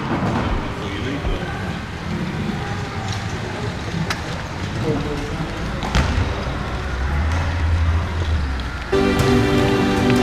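Echoing sports-hall noise during power chair football, with faint voices and a few sharp knocks, and a low electric-motor hum from the power chairs in the second half. Background music starts near the end.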